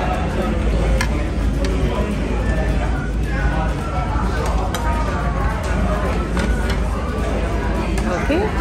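Indistinct voices and background music in a restaurant, with a few short clinks of cutlery on a plate.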